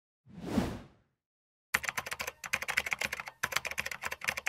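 A short whoosh transition sound effect, then about three seconds of rapid computer-keyboard typing clicks with two brief pauses: a typing sound effect for a title being typed out on screen.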